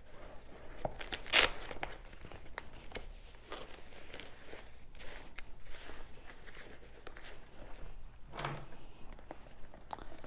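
Rustling and crinkling of a thin nylon pouch and backpack fabric as booklets and a journal are pushed in, with scattered small knocks. A sharper rustle comes about a second and a half in.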